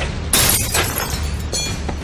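Glass shattering in a sharp crash about a third of a second in, with brief high ringing from the pieces, over a low film music score.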